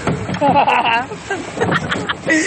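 Several men's voices shouting and laughing excitedly over one another, with no clear words.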